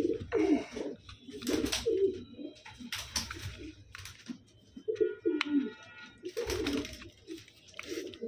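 Domestic pigeons cooing repeatedly, low and throaty, with a few short noise bursts among the coos.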